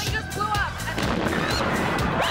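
Noise of a bomb blast on a crowded city street, with people crying out and screaming, mixed with a news report's background music; the blast noise thickens about a second in.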